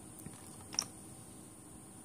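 Two light clicks, a faint one just after the start and a sharper one nearly a second in, over a faint steady background hiss with a thin high whine.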